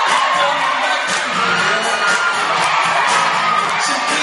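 Live pop concert music over the hall PA with the audience cheering loudly. The bass drops out for about a second near the start.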